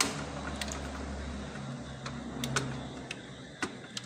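About half a dozen sharp clicks and small knocks at irregular intervals, from parts being handled inside an open desktop computer case, over a steady low hum.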